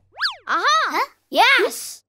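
A quick cartoon sound effect whose pitch swoops up and straight back down, followed by two short wordless cartoon-voice sounds, each rising then falling in pitch.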